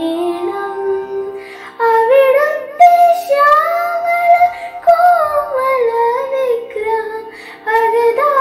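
A girl singing a devotional Krishna bhajan solo, drawing out long vowels in melodic lines that glide up and down in pitch. There are short breaks between phrases about two seconds in and near the end.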